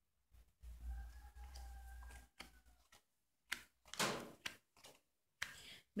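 A rooster crows faintly: one long call, about a second in. Then come a few brief soft swishes and taps as tarot cards are laid down on a cloth-covered table.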